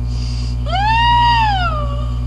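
A woman's high, wailing cry of travail in prayer: one long wail that rises and then falls, starting about two-thirds of a second in and lasting over a second, over a steady electrical hum.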